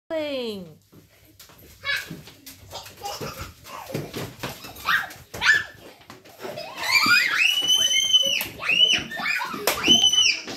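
Children shouting and squealing in excited play, with long, very high-pitched shrieks through the second half. A single voice slides down in pitch at the very start.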